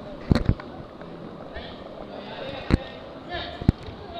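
Several sharp impacts over background voices: two close together near the start, a single one past halfway, and another near the end.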